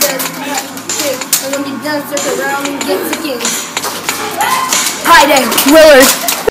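A child speaking, the words not clear, with a louder voice sliding up and down in pitch near the end.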